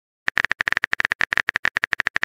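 Keyboard-typing sound effect: a fast run of short, identical clicks, more than a dozen a second, starting about a quarter second in.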